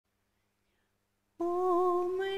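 Silence, then a single voice begins a long held hummed note about one and a half seconds in.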